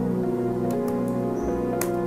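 Calm background music of long held notes, with a few keyboard clicks from typing.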